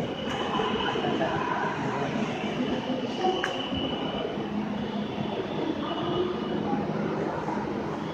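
Metro train running alongside the platform, a steady rumbling noise with a thin high squeal held through the first half. A single sharp click comes about three and a half seconds in.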